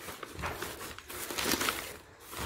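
Plastic bags and food packets rustling and crinkling as they are rummaged through in a packed suitcase, in irregular bursts, loudest about one and a half seconds in.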